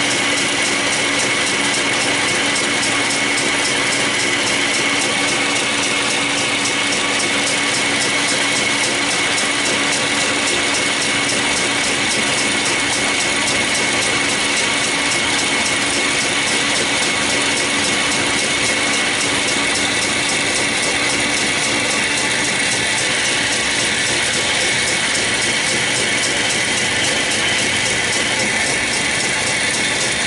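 Metal lathe running steadily under power while a boring bar cuts a taper into the bore of a small sprocket held in soft jaws, its gear drive giving a steady whine over a dense mechanical clatter.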